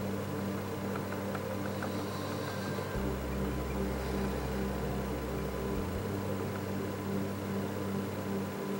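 Steady low electrical hum with a faint hiss, the room tone of a workshop, with nothing being handled.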